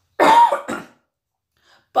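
A man coughing into his cupped hands: one loud cough just after the start, then a smaller second one about half a second later.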